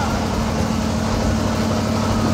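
Steady engine hum and low rumble of the open-sided vehicle they are riding in, heard from on board.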